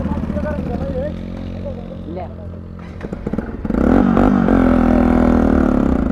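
Bajaj Pulsar NS 200's single-cylinder engine running under way. It eases off around two seconds in, then the throttle opens about four seconds in and the engine pulls noticeably louder.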